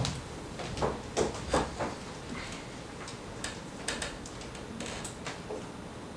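Footsteps on a wooden stage floor as people walk off: a quick run of sharp knocks over the first two seconds, then a few fainter ones.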